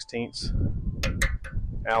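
A few light metallic clicks of a steel Allen key being handled and fitted to a fuel tank bolt, short sharp strokes about a second in.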